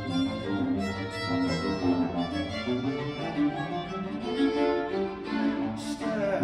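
Baroque string ensemble, violins and cello, playing an instrumental passage with moving, evenly paced notes before the singer comes in.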